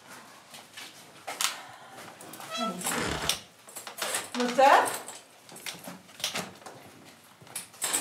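Brief speech in a small, echoing stone room, with a few sharp clicks and knocks scattered through it and a low thump about three seconds in.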